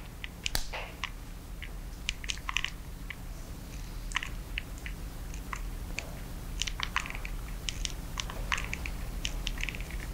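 Hot glue gun being worked: small, irregular clicks and crackles, a few each second, from the trigger and glue-stick feed as glue is laid along the edge of a canvas, over a steady low hum.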